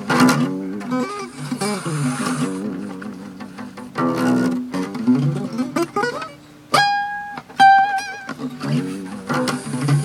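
Acoustic guitar playing quick single-note arpeggio runs up and down the neck, with a chord about four seconds in, then a few high notes held with vibrato near the end.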